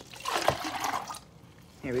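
Orange Hi-C poured from a tall cup into a paper fast-food cup, splashing for about the first second and then tailing off.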